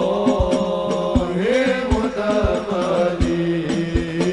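Live sholawat: Arabic devotional singing with long, ornamented held notes over a steady, regular drum beat.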